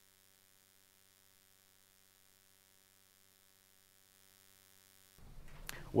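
Near silence with only a faint, steady electrical hum; faint room noise comes back about five seconds in, just before a voice starts.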